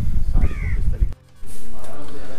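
A bird calls once, a short call rising then falling in pitch, over a low rumble. The sound almost drops out just past a second in, then a loud steady hiss follows.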